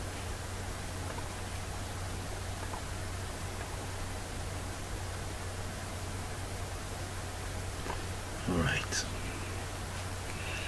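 Steady microphone hiss with a low hum underneath; a short, soft voice sound such as a breath comes about eight and a half seconds in.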